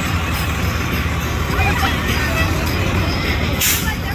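Fire engine's diesel engine running with a steady low rumble as it passes, with people's voices and a short burst of hiss near the end.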